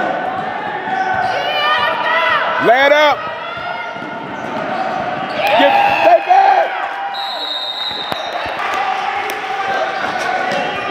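A basketball game in a gym: the ball bouncing on the court and players' footfalls, with loud shouts about three and six seconds in, echoing in the hall. A short high squeal sounds about seven seconds in.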